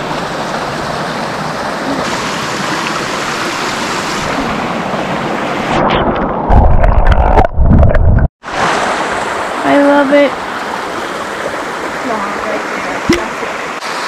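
Shallow mountain brook running over rocks, a steady rushing babble. About six seconds in, the phone is dipped under the water and the sound turns muffled and loud, low and boomy, for about two seconds. It cuts out briefly and then comes back to the open-air rush of the stream.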